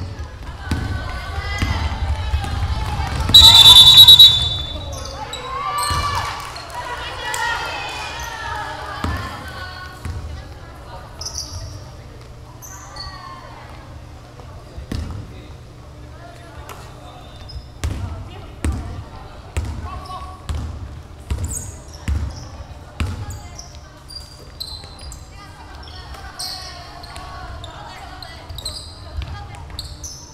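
Basketball game sounds on a gym court. A referee's whistle is blown once, short and very loud, about three and a half seconds in. Players' voices, sneakers squeaking and a basketball bouncing on the hardwood floor follow.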